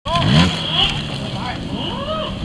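Trials motorcycle engine revving up sharply in the first half second, then running on at a lower, steadier pitch. Spectators' voices sound over it.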